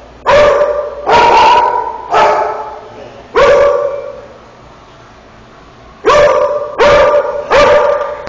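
A dog barking loudly, seven barks in all: four spaced out over the first few seconds, a pause, then three in quick succession near the end, each trailing off in an echo.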